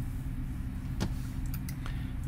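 Steady low background hum, with a single sharp mouse click about a second in and a couple of faint ticks near the end, as a context menu is opened on a file.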